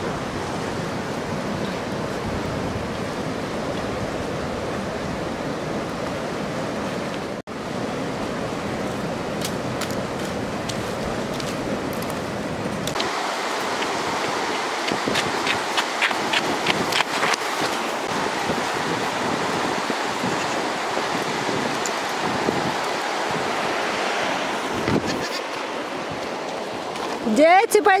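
Steady rushing of a river running close by. A run of light clicks comes about halfway through.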